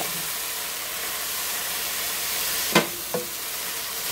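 Ground beef and diced onion sizzling in a hot frying pan: a steady hiss, with one short knock about three seconds in.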